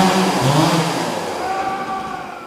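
Chainsaw engine revving, its pitch rising and falling a couple of times.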